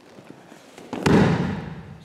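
A judo student thrown with an o-goshi hip throw lands on the padded mat about a second in: one heavy slap and thud that dies away over about a second.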